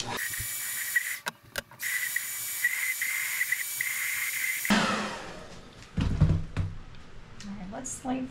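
Handheld hot-air blower running with a rushing hiss and a steady whine, drying paint on a plastic ornament. It cuts out briefly about a second in, runs again, then is switched off a little over four seconds in and winds down with a falling whine, followed by a few low handling thumps.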